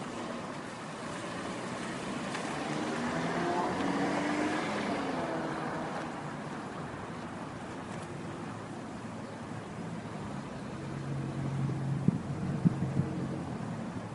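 Street ambience with traffic going by: a rushing noise that swells about four seconds in, then a low engine hum that grows near the end, with a few sharp clicks.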